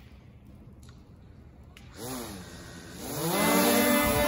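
A small folding quadcopter drone's motors starting up, with a brief rise-and-fall of propeller whine about two seconds in, then a loud propeller whine rising in pitch and holding as it lifts off near the end.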